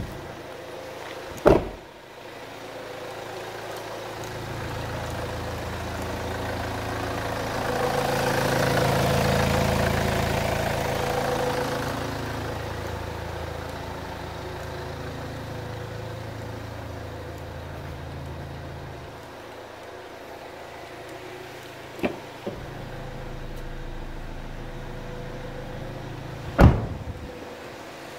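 Kia Sportage's engine idling steadily, growing louder a few seconds in, fading again after the middle and then running on more quietly. A sharp click comes shortly after the start and several more near the end, the loudest about a second before the end.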